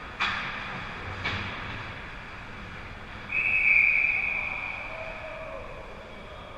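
Two sharp cracks of play on the ice echoing around the rink early on, then about three seconds in a referee's whistle gives one long blast that trails off in the rink's echo, stopping play.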